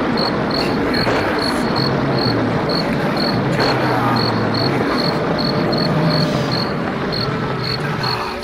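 Cricket chirps, about three a second, over a dense, steady ambient bed with low held tones, laid in as an intro sound effect.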